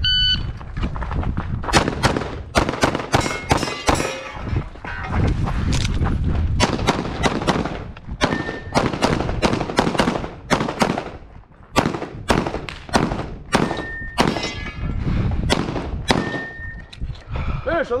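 A shot timer beeps at the start, then a semi-automatic pistol fires rapid strings of shots for about fifteen seconds, with a short pause near the middle. A few brief rings sound among the shots.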